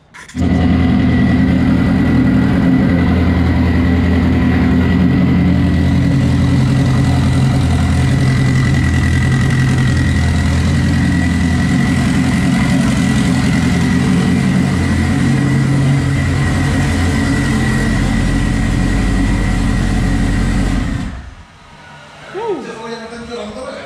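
A car engine running at a steady, unchanging pitch, loud and continuous. It cuts in abruptly just after the start and cuts off about a second before the end.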